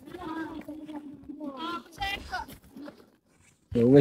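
People's voices talking at a moderate level, with a short pause and then a louder voice starting near the end.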